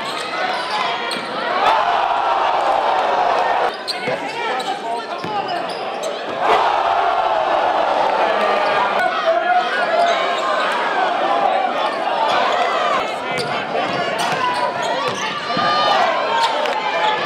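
Live basketball game sound in a gymnasium: a basketball being dribbled on the hardwood under the crowd's chatter and shouts. The sound changes abruptly twice, about four and six and a half seconds in.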